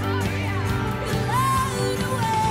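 A young woman singing solo over a backing track; her voice slides through several notes, then rises into a held high note partway through.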